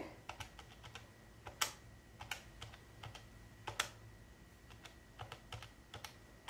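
Keys of a Pen+Gear 12-digit desktop calculator being pressed as figures are added up: a string of soft, irregular clicks, a few of them louder.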